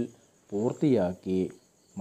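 A man's voice speaking one short phrase in the middle, with pauses either side, over a faint steady high-pitched tone.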